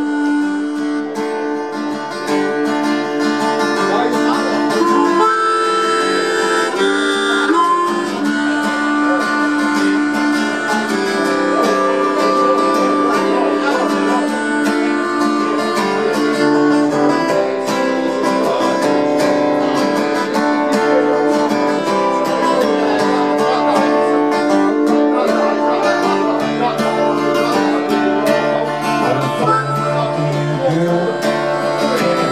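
Live harmonica solo with long held notes over a strummed acoustic guitar, in an instrumental break of a folk-blues song.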